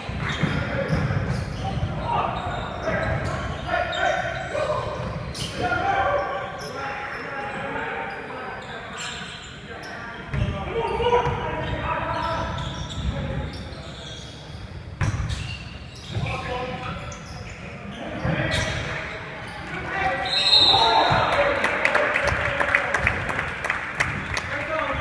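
A basketball game on a hardwood court: the ball bouncing and players' voices, echoing in a large gym.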